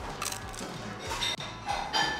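Crunching as teeth bite into a battered piece of sweet potato tempura: a few sharp crunches, near the start, about a second in and near the end, over background music.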